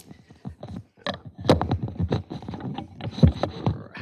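Handling noise from a handheld microphone being picked up and moved: a close run of irregular knocks and thumps with heavy low bumps.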